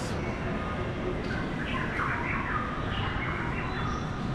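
Shopping mall interior ambience: steady background noise, with faint high chirps in the middle.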